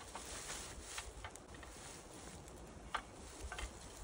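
Faint handling of a metal climbing tree stand as it is turned over, with a few light clicks and knocks from its frame.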